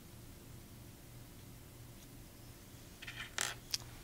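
Faint room tone with a low steady hum. In the last second a paper tissue is handled: a few short crinkling rustles and a sharp tap.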